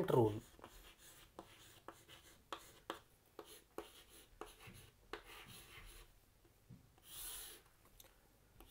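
Chalk writing on a chalkboard: faint short taps and scratches as letters are written, coming about every half second, then a longer, hissier stroke near the end.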